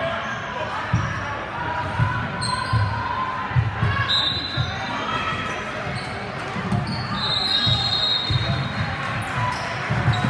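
Basketball thuds and footfalls on a hardwood gym court, about once a second, with a few short sneaker squeaks. Indistinct voices of players and spectators echo through the hall.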